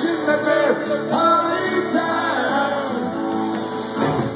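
Punk rock band playing live: a male voice singing over acoustic and electric guitars and drums, with no break.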